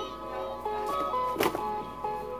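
Background music: a bright melody of short, steady notes stepping up and down, with a sharp click about one and a half seconds in.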